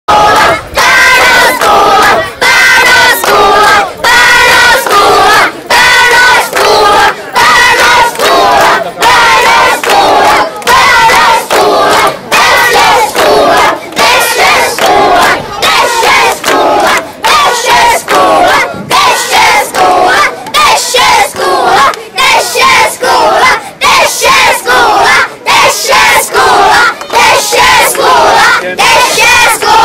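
A group of schoolchildren loudly chanting a protest slogan together in a steady rhythm of shouts, one to two a second.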